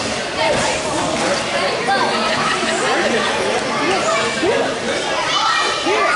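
Overlapping, indistinct voices of children and adults talking and calling out at once in a wrestling practice room.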